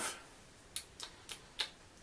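Four small wet clicks of lips and tongue smacking, about a third of a second apart, as a mouthful of beer is tasted, over quiet room tone.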